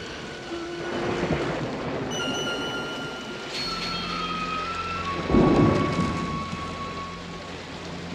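Heavy rainstorm on a film soundtrack: steady rain, with a loud rumble of thunder about five seconds in, over long sustained tones of eerie score music.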